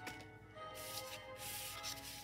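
Quiet background music with held notes, and a soft rustle of cardstock panels being slid across the desk.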